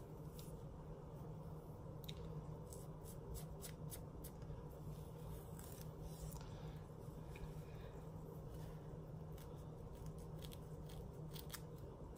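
Faint, irregular scratching clicks of a plastic pick and comb scraping across a dry, flaking scalp between braids.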